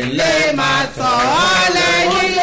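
Voices chanting in a sung, melodic way, with gliding and held notes and a short break about a second in.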